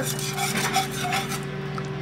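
Wire whisk stirring milk gravy in a pan, its wires scraping and rubbing against the pan bottom in repeated strokes, over a steady low hum.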